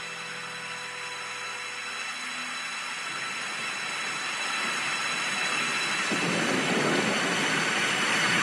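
The held notes at the end of a song fade out over the first few seconds, and a rushing noise swells up in their place, growing louder from about six seconds in, like a sound effect opening the next track of the broadcast.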